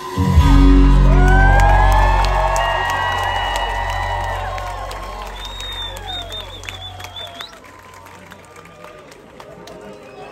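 A live rock band's final hit, with the bass and guitars ringing out and fading over about seven seconds, as the crowd cheers and screams over it. A high, wavering whistle sounds near the end, and the cheering carries on at a lower level after the music has died away.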